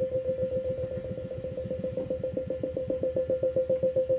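Pulsing, whistling software synth tone from an Arturia VST, resampled and triggered from a Maschine pad: one steady high note repeating in rapid, even pulses, the part of the line that has gone up an octave.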